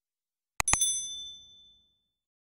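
Sound effect of a subscribe-button animation: a double mouse click on the notification bell icon, then a bright bell ding that rings high and fades away over about a second.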